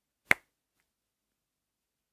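A single sharp finger snap, about a third of a second in.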